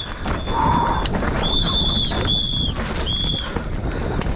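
Mountain bike disc brakes squealing under braking: several high, steady squeals of half a second to a second each, with a lower squeal about half a second in, over the rumble of tyres and the rattle of the bike on a rough dirt trail.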